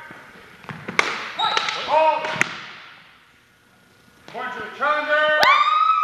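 Longsword bout on a gym floor: sharp knocks of blade contact about one, two and a half and five and a half seconds in. Between them come short squeaks and calls that rise and then hold, with a quieter pause in the middle.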